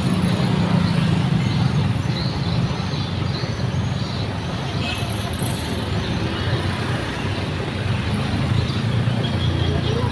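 Busy street traffic, mostly small motor scooters passing close by with their engines running steadily, along with cars. A brief high-pitched tone sounds about halfway through.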